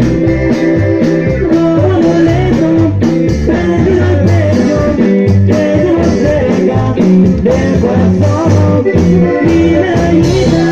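A live band playing loud dance music: a rhythmic bass line with guitar, and a singing voice over it.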